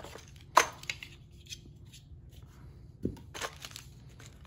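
Packaging being handled in a cardboard product box: a sharp tap about half a second in, then light clicks and rustles, and a short rustle about three seconds in as a small plastic bag of screws is lifted out.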